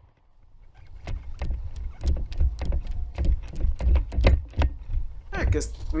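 Quick footsteps through dry grass and brush picked up close on a body camera, about three steps a second, over a low rumble on the microphone.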